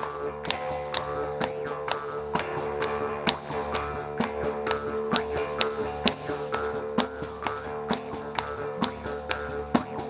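Jaw harp (Sicilian marranzano) played rhythmically: a steady buzzing drone with sharp twangs about two to three times a second.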